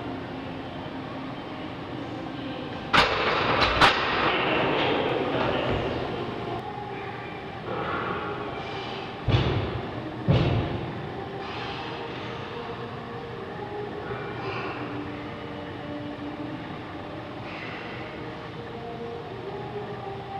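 Iron weight plates on a loaded barbell clanking during a set of bench presses: a quick run of sharp clanks about three seconds in, then two heavy knocks around nine and ten seconds. A steady rumbling background noise runs underneath.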